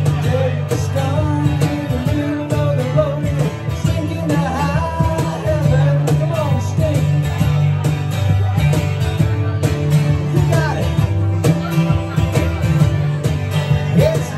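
Live music from a small band: strummed acoustic guitar with a man singing over it.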